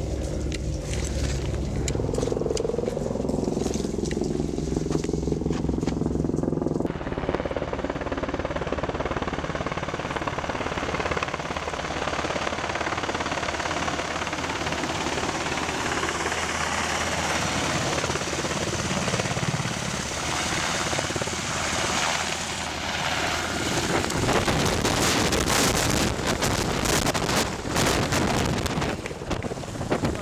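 A steady low engine drone for about the first seven seconds, then a loud, even rushing noise that takes over and runs on, growing rougher and crackly near the end.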